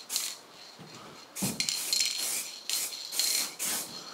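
Aerosol spray-paint can spraying in a run of short hissing bursts, the longest about a second, with a faint thin whistle through the spray.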